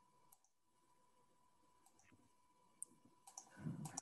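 A few faint computer-mouse clicks heard over near silence on a video-call line, with a faint steady tone underneath and a short, somewhat louder noise just before the end.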